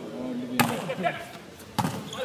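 Two sharp smacks of a volleyball about a second apart, with voices calling between them.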